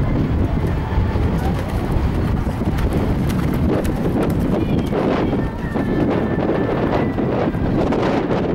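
Horse cantering on a sand arena, its hoofbeats thudding in a steady rhythm under a low rumble.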